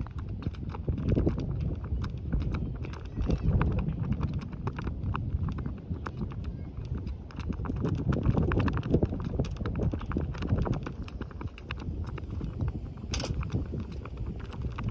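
Gusty wind buffeting a ground-level microphone: a low, uneven rumble with frequent crackling clicks, and a sharper click near the end.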